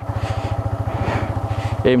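Yamaha MT-15's 155 cc single-cylinder engine running steadily as the bike rolls along slowly, an even rapid pulse.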